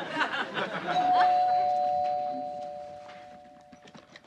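Two-note ding-dong doorbell chime, a higher note then a lower one, about a second in; both ring on and fade away over about three seconds.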